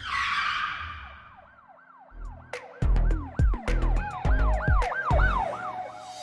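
Channel logo intro sting: a whoosh, then a siren-like wail rising and falling about three times a second over heavy bass hits and sharp snaps from about two seconds in.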